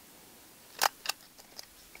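A stapler driving a staple through a J-cloth into a thin cardboard frame: one sharp click a little under a second in, with a smaller click just after.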